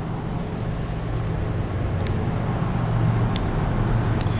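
Steady low rumble of motor traffic that grows gradually louder, with a few faint clicks.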